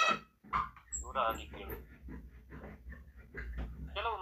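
A man speaking in Kannada, reading a story aloud, over a low steady hum. There is a short loud sound at the very start.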